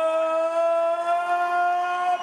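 A ring announcer's amplified voice holding one long vowel, drawing out a boxer's surname in a fight introduction, the pitch creeping slightly upward.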